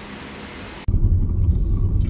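Faint room hiss, then, after an abrupt cut about a second in, a loud low rumble heard from inside a car cabin.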